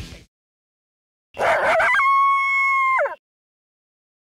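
A single canine howl about a second in: it rises into one steady held note for about a second, then drops in pitch and stops.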